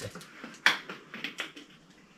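A single sharp click about two-thirds of a second in, followed by a few fainter ticks.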